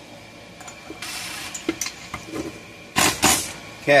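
A cordless driver running a chainsaw's flywheel nut down onto the crankshaft: a short whir about a second in, then two short, louder bursts near the end as the nut snugs up.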